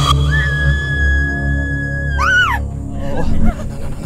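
A woman's high-pitched scream, held on one steady note for about two seconds and ending in a quick rising and falling wail, over low droning horror-style music.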